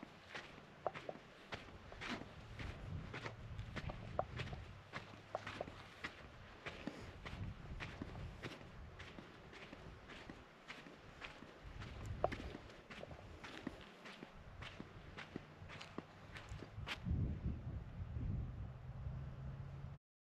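Footsteps crunching on a gravelly volcanic trail at a walking pace, about two steps a second, over a low rumble. The steps stop near the end.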